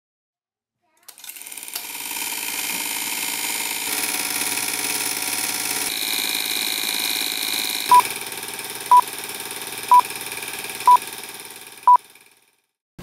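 Film projector switched on with a click and running steadily, then five short high beeps a second apart over it before the sound fades out.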